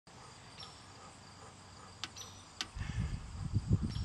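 Faint backyard ambience with insects chirping in thin, steady high tones, two sharp clicks about two seconds in, then low rumbling thumps through the second half.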